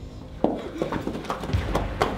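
Hurried footsteps of several people running on a hard floor: a quick, irregular patter of steps starting about half a second in.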